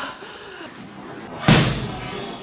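A single hard punch landing on the body: one sharp smack about one and a half seconds in, with a short tail after it.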